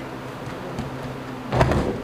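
A single brief thump about a second and a half in, over a steady low hum.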